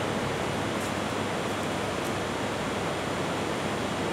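A steady, even hiss of background noise with no distinct sounds in it.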